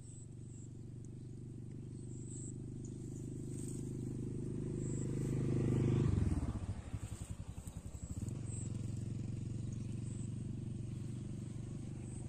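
Engine of a motor vehicle on a nearby road: a steady low hum that builds to its loudest about halfway through, wavers for a couple of seconds as it passes, then settles back into a steady hum.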